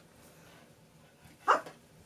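A Cavalier King Charles Spaniel gives a single short bark about one and a half seconds in.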